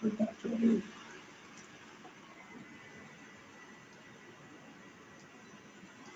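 A man's brief low murmur in the first second, then faint room tone.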